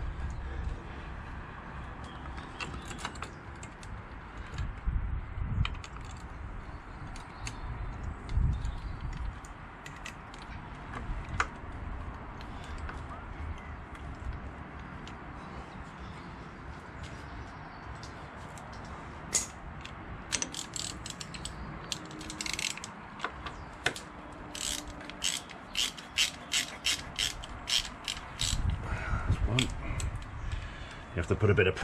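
Socket ratchet clicking as motorcycle clutch spring bolts are wound in a little at a time, among scattered knocks and clinks of metal parts. A long run of quick, even clicks comes in the last third.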